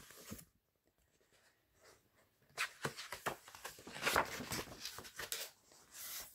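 Paper rustling and crackling as a picture book's page is turned and the book handled, starting about halfway through after a quiet pause.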